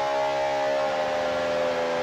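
Distorted electric guitar from a hardcore punk recording holding one sustained, ringing chord, its pitch sagging slightly, with no drums.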